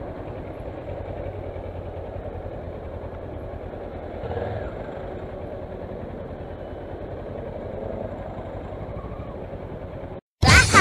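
Kawasaki Versys motorcycle engine running at low speed in slow traffic, a steady low rumble with a brief louder swell about four seconds in.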